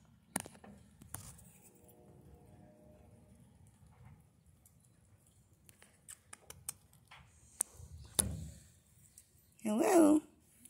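Mostly quiet, with a faint low hum and a scattered run of small sharp clicks in the second half. A brief, loud voice sound rises right at the end.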